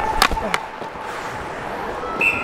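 Hockey skates scraping and carving on the ice, heard close on a player's microphone, with two sharp clacks about a third of a second apart early on.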